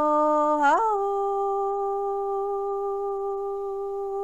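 A woman's voice singing Hmong lug txaj (sung poetry): a note that rises about a second in, then one long, steady held tone.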